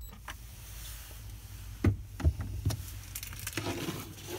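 Three sharp clicks and knocks from a cargo net's hooks being handled against the trailer's wooden cabinetry, over a steady low hum.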